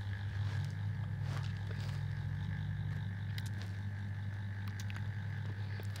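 A steady low hum with a few faint clicks around the middle.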